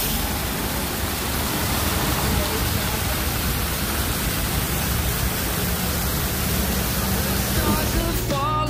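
Large fountain's central jet and ring of arcing jets splashing into the basin: a steady, even rushing hiss like heavy rain.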